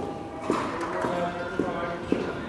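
Hard-soled footsteps clicking on a polished stone floor at a steady walking pace, about two steps a second, with voices talking underneath.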